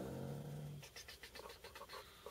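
A man's drawn-out 'uh' trails off at one steady pitch. Then about a second in comes a run of faint, quick ticks, about seven a second, from a computer mouse as the Predator preset menu is worked through.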